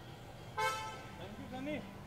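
A vehicle horn gives one short toot about half a second in, the loudest sound here, with voices talking in the background.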